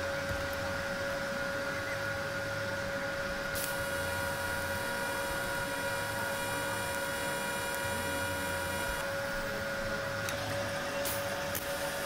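TIG welding arc running steadily as a filler-rod pass is laid around the joint between a cast yoke and a steel axle tube, heard as a constant hum. A set of higher steady tones comes in about three and a half seconds in and stops about nine seconds in.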